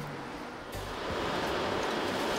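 Steady outdoor background rush with no clear tones, such as distant traffic or wind, stepping up a little in level about three-quarters of a second in.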